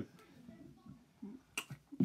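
A mostly quiet pause broken by a single sharp click about one and a half seconds in, followed by a lighter tick.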